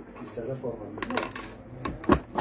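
Small pieces of gold jewellery clicking and clinking as they are handled in the fingers, a few light metallic clicks about a second in and again near the end.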